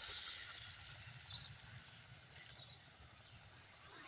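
Quiet outdoor background with a faint low rumble, fading toward near silence. Two faint high chirps come about a second and two and a half seconds in.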